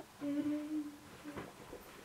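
A woman humming one steady note for under a second, with a couple of faint clicks, one right at the start and one about a second and a half in.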